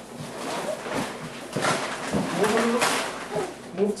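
Cardboard shipping box being pulled open and handled by hand: rustling cardboard with a couple of louder tearing rips. A small child makes short cooing, babbling sounds over it.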